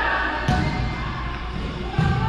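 Two thuds of a volleyball being struck during a rally, about a second and a half apart, ringing in a large gym, with players' voices in the background.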